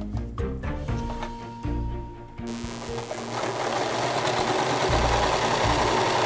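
Background music. About two and a half seconds in, a domestic electric sewing machine starts and runs steadily, stitching a half-centimetre hem.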